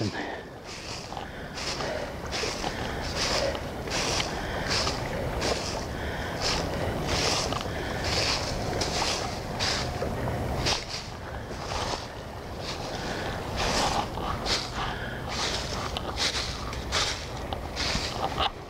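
Footsteps crunching through dry fallen leaves at a steady walking pace, a little over one step a second, with a short lull about eleven seconds in.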